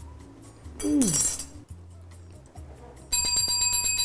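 A small bicycle-style bell rung in a quick run of strokes about three seconds in, its bright metallic ringing lingering afterwards.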